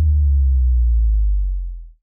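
Deep, steady bass tone of an outro sound effect, the tail of a low boom, fading out near the end.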